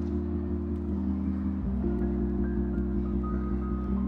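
Soft instrumental background music: held, layered chords with a light melody on top, the chord changing about one and a half seconds in.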